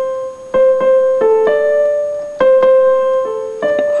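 Electronic keyboard playing a simple melody one note at a time, about ten notes, some held longer than others.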